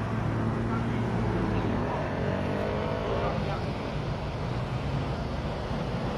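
A car driving slowly past close by, its engine's low hum strongest in the first two seconds, over steady street traffic noise.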